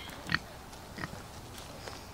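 A pig grazing, with three short, sharp bites or crunches about a third of a second, one second and two seconds in; the first is the loudest.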